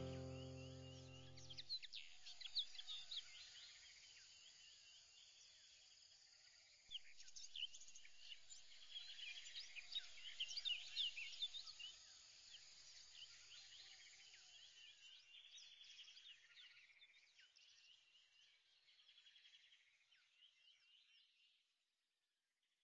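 Faint chorus of birds chirping. The last chord of background music dies away in the first two seconds. The birdsong swells about seven seconds in and then fades out near the end.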